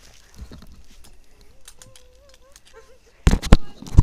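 An action camera being handled by hand. A few heavy, close bumps and knocks come near the end and again right at the close, after a few seconds of faint background with a brief wavering tone.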